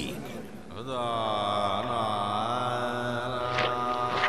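A deep male voice holding one long, steady chanted note, like a mantra, starting about a second in. A few short sharp ticks sound near the end.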